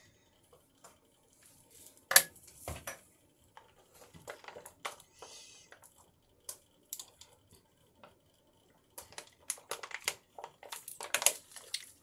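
Small hard objects being handled and set down, giving light clicks, knocks and clatter. There is one sharp knock about two seconds in, and the clatter is busiest in the last few seconds.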